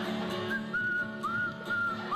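A person whistling one long, wavering high note over steady acoustic guitar accompaniment. The whistle starts about a quarter of the way in and breaks into a quick warble near the end.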